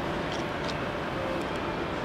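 SBB Re 460 electric locomotive with its train, giving a steady low rumble with a faint electrical hum.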